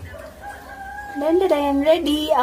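A long drawn-out call held on a steady pitch, starting about half a second in and growing louder from about halfway through.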